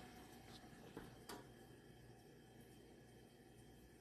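Near silence: room tone, with two faint clicks about a second in.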